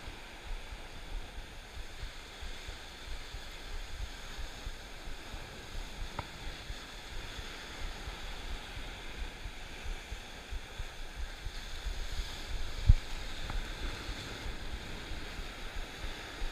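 Ocean surf washing against rocks below, with wind rumbling on the microphone. A single sharp thump stands out about three-quarters of the way through.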